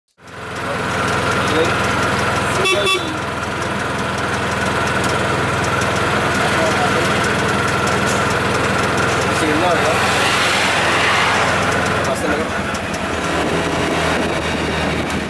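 Auto-rickshaw (tuk-tuk) engine running steadily while under way, heard from inside the open cab, with a short horn toot about three seconds in.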